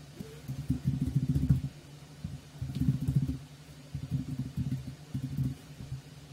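Computer keyboard being typed on in four quick runs of keystrokes, over a low steady hum.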